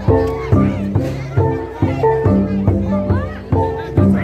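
Gongs struck in a repeating rhythm, about two strokes a second, each stroke ringing on in several steady layered pitches. Crowd voices, children's among them, carry over the gongs.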